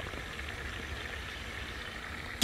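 Fish frying in hot oil in pans over a gas burner, a steady sizzle.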